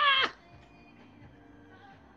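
A man's high-pitched laugh, ending in a short falling squeal in the first moment. Only faint room noise follows.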